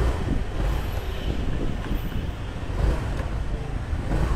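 Low, uneven rumble of passing motorbike traffic on a city street, with wind buffeting the microphone.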